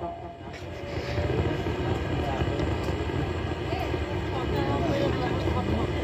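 Faint voices talking in the background over a steady low rumble, during a lull between loud announcements on a public-address system.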